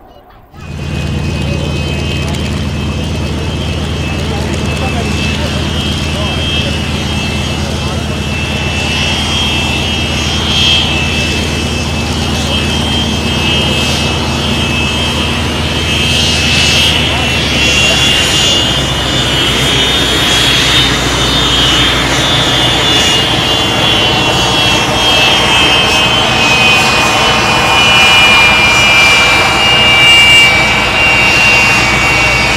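BAC 167 Strikemaster's Rolls-Royce Viper turbojet running, a steady high-pitched whine over a low hum. About two-thirds of the way through, the whine rises in pitch and then sinks again.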